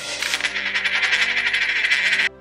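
A metal coin hits a hard tabletop and rattles on it as it settles, a fast, continuous run of metallic ticks. Faint background music plays underneath.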